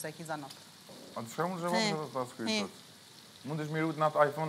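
Food sizzling in a frying pan, an even hiss that runs on under voices talking, which come in about a second in and again near the end.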